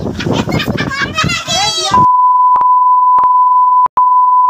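People talking for about two seconds, then a steady, loud single-pitch beep near 1 kHz takes over the whole sound track, broken by a few brief clicks. It is an edited-in bleep tone that blanks out the audio.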